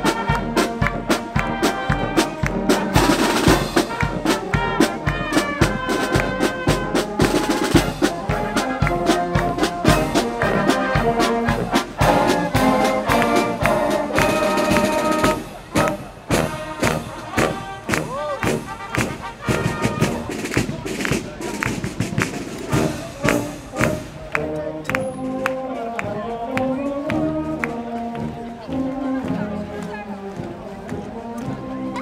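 Marching band playing a march: a brass melody over a steady beat of bass drum and snare drums. About halfway through it grows quieter, with the drums and brass carrying on more softly.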